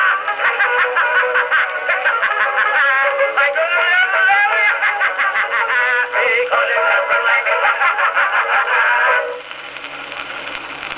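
Edison Blue Amberol cylinder played on an Amberola 30 phonograph: a thin, narrow-band acoustic recording of orchestra and voices. The music stops about nine seconds in, leaving only the cylinder's surface hiss and the machine's running noise.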